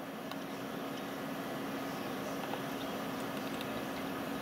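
Steady background hiss with a low, steady hum and a few faint clicks.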